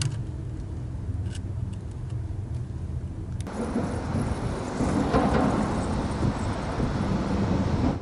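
A low steady rumble, then an abrupt switch about three and a half seconds in to road traffic noise, with a vehicle passing that swells to its loudest about five seconds in.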